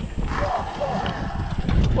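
A golf cart rolling along a concrete cart path, with an uneven low rumble of wind buffeting the microphone from the cart's motion.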